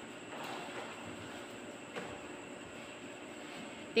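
Quiet room tone: a faint steady hiss with a thin high-pitched tone, and one soft click about halfway through.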